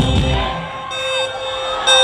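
Live concert music over a large PA, recorded from inside the crowd. About half a second in, the bass drops out, leaving high held tones and a tone that rises and falls.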